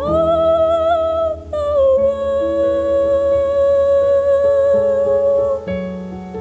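A female solo voice sings a slow, lullaby-like melody over sustained instrumental chords. It rises at the start, then holds one long steady note from about two seconds in until near the end.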